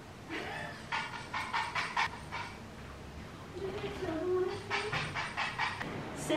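A cat treat jar being shaken: two runs of quick rattles, about five a second, with a short pitched call between them.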